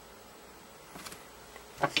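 Faint room noise, then a few sharp handling clicks near the end as the camera or meter is moved.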